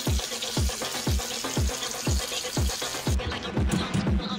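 Background electronic dance music with a steady kick drum at about two beats a second. Over it, for the first three seconds, an even hiss that cuts off suddenly.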